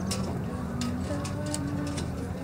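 Faint distant music and voices over a steady low hum, with a few light clicks.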